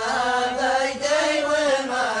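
Male voices chanting a Yemeni zamil, a traditional tribal chanted poem, unaccompanied, in long drawn-out melodic phrases.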